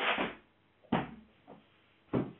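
A foam exercise mat being unrolled: a swishing flap as it is swung open, then a sharp slap about a second in as it drops flat onto the floor.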